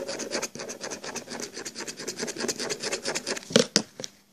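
A glitter marker's tip scratching rapidly back and forth over a seashell as it is coloured, about ten short strokes a second. Two louder strokes come near the end.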